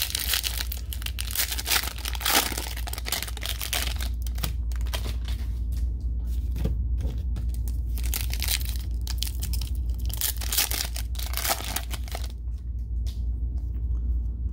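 Cellophane wrapper of a Panini Mosaic cello pack of basketball cards crinkling and tearing as it is pulled open by hand, a rapid run of crackles, over a steady low hum.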